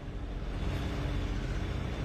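Steady street noise: a low rumble of vehicle engines running.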